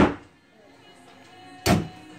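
A single hammer blow into a drywall wall, a sharp knock with a short ring-out, about a second and a half in.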